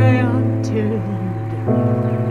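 Music: a song with sustained chords over a low bass note and a singing voice coming in at the start, the chords changing shortly before the end.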